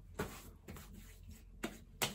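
Hands patting and rubbing aftershave onto the face: a few soft slaps of palms on skin over a quiet room.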